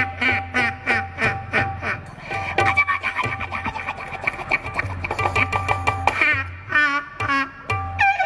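Live stage music from an electronic keyboard with a steady bass and a rhythmic beat, short repeated phrases at first and fuller playing later, with a voice singing into a microphone over it near the end.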